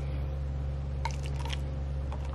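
Liquor being poured from a bottle into a paper cup, a faint, patchy splashing that starts about a second in, over a steady low hum.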